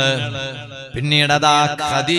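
A man chanting in a drawn-out, melodic style, with long held notes and a short dip about halfway through.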